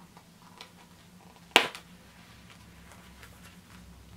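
A single sharp click about a second and a half in, as the snap button on a small leather trifold wallet is unfastened. Faint handling rustle and small ticks from the leather around it.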